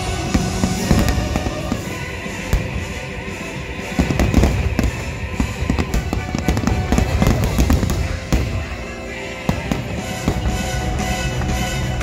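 Fireworks bursting in rapid succession, a string of sharp bangs and crackles over the show's loud musical soundtrack, with the thickest volley between about four and eight seconds in.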